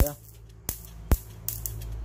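Rechargeable electric mosquito-swatter racket arcing to a metal tool tip held against its charged mesh: a few sharp electric snaps, spaced irregularly and coming closer together near the end, over a low steady hum.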